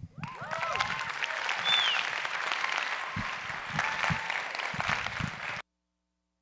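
Audience applauding. The applause runs dense and even, then cuts off suddenly about five and a half seconds in.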